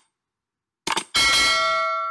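Subscribe-animation sound effect: a quick double mouse click, followed a moment later by a bright notification-bell ding that rings with several clear tones and slowly fades.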